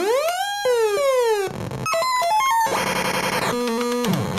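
Circuit-bent effects-keychain toy sound chip played as a drum machine through arcade buttons, firing electronic sound effects: a tone sweeping up then down, a run of stepped beeps, a dense buzzing stretch about three seconds in, then held tones near the end.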